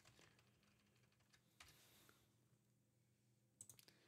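Near silence, with a faint single click about one and a half seconds in and a few faint clicks near the end, from computer keys being pressed while editing a terminal command.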